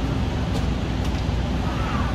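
Steady rumbling background noise, strongest in the low end, with no distinct event standing out.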